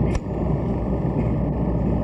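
Steady low rumble and hiss of an old archival news soundtrack during a pause in a speech, with a sharp click just after the start.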